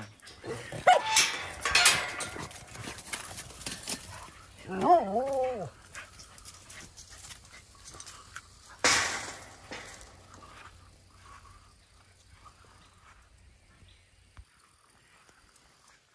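Dogs whimpering and yipping in excitement at a wire-mesh fence, eager to be let into the play yard; the calls are concentrated in the first half and it quietens after that.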